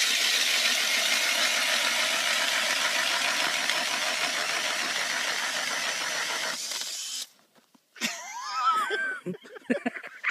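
Cordless drill driving a hand ice auger through lake ice: a steady motor whir with the grinding of the blades cutting ice. It cuts off suddenly about seven seconds in, as the auger breaks through.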